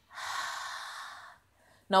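A woman breathing out audibly through her mouth, one long breathy exhale of about a second and a half that tapers off. It is the slow out-breath of a deep belly-breathing exercise.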